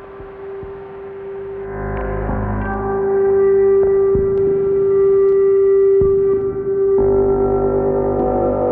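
Gretsch electric bass guitar played through a Eurorack modular rig, a Make Noise Mimeophon delay and Joranalogue Filter 8, giving slow, ringing, gong-like ambient tones. One held note swells in volume over the first few seconds, with fuller low notes coming in about two seconds in and again near the end.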